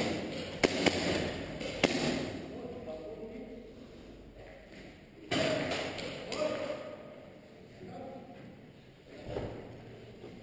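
A few sharp airsoft gun shots or BB impacts in the first two seconds, after which players shout in the background.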